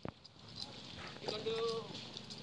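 Soldiers' boots marching on a paved road, with a sharp knock at the very start. In the second half comes a long, drawn-out shouted drill command.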